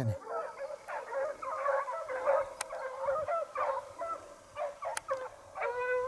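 A pack of foxhounds baying in full cry on a fox's trail: many overlapping, wavering calls that rise and fall, heard from far off across the valley.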